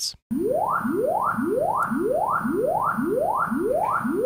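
Sonarworks SoundID Reference room-measurement test signal playing through studio monitors: a repeating series of rising sine sweeps, laser noises, about two a second, each climbing from a low to a mid pitch. It starts after a brief silence just after the start.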